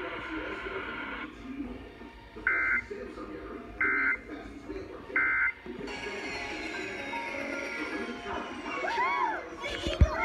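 Emergency Alert System End-of-Message data bursts: three short, loud, identical warbling data tones about 1.3 seconds apart, the signal that closes the national periodic test alert.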